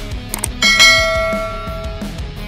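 A short click, then a bright bell chime that rings out and fades over about a second and a half: the notification-bell sound effect of a subscribe-button animation, over rock music.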